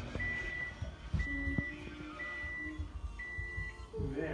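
An electronic beeper sounding four even beeps, one a second, each about half a second long on the same high pitch, in the pattern of an alarm or timer.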